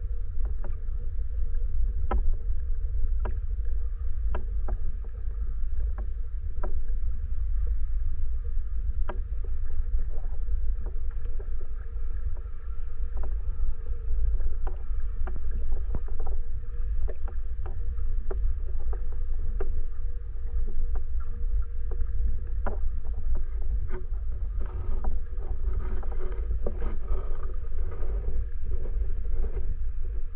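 Underwater sound through a GoPro HERO9's microphone while snorkeling: a heavy low rumble of moving water with a steady faint hum and scattered sharp clicks throughout.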